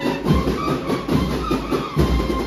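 Processional marching band (agrupación musical) playing: cornetas holding notes over a regular beat of bass drum and snare.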